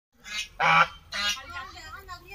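Domestic goose honking three times in quick succession, the middle honk the loudest and longest.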